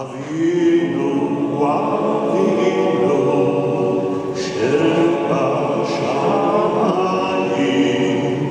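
Male choir singing a Jewish liturgical piece unaccompanied, in sustained chords; a new phrase begins just after a brief breath at the start.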